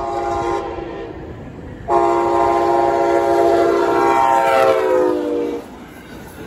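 Amtrak locomotive air horn sounding a chord of several notes for a grade crossing: the end of one blast, then a long loud blast starting about two seconds in that drops in pitch as the locomotive passes close by and cuts off near the end. The rumble of the passing train runs underneath.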